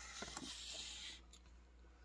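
Faint rustle and scrape of a cardboard box being turned over in the hands, with a few small clicks, dying away after about a second.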